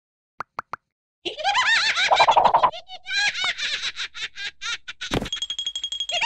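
Three quick little pops, then a cartoon larva's high-pitched, rapidly warbling laughter, with a thump near the end.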